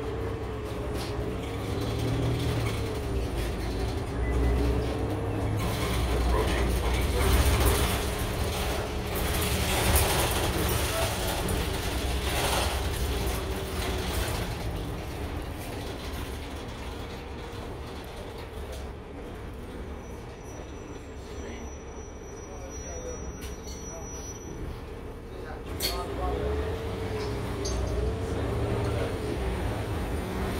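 Inside a city transit bus on the move: a low engine and drivetrain rumble with a whine that rises and falls as the bus speeds up and slows, and occasional knocks and rattles from the body. It eases off in the middle and picks up again near the end.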